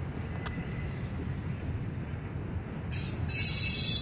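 Freight cars rolling slowly through a rail yard with a steady low rumble. About three seconds in, a loud, high-pitched steel wheel squeal sets in.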